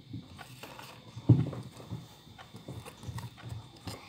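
Soft irregular thumps and light rustling from picture flashcards being handled and swapped close to a phone's microphone, the loudest thump about a third of the way in and a few smaller knocks near the end.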